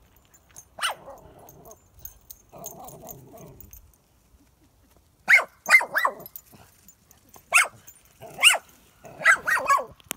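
Small dog barking: a single bark about a second in, then bunches of loud, sharp barks, each falling in pitch, through the last five seconds.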